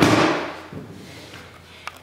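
A Bosu balance trainer being handled and set down on a tile floor: a thud at the start that fades over about half a second, then a light tap near the end.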